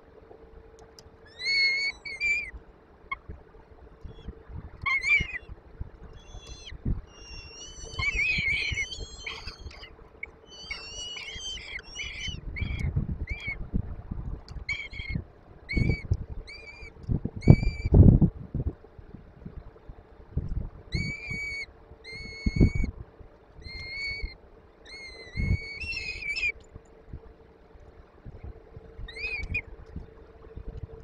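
Peregrine falcon chicks giving short, high begging calls over and over in clusters while the adult female feeds them. Low thumps come from the birds moving about in the box, and a faint steady hum runs underneath.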